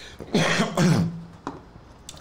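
A man clearing his throat, two short rough rasps in quick succession.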